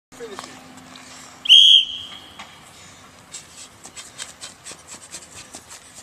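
A coach's sports whistle gives one short, shrill blast about a second and a half in, the start signal for a sprint drill. It is followed by a quick run of light taps, about four a second.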